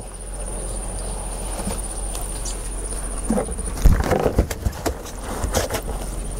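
A catfish being handled out of a plastic basin of water in a cloth and onto a wooden board: a run of knocks and splashes starts about three seconds in, the loudest a dull thump just before four seconds. A cricket chirrs steadily behind it, dropping out while the knocks last.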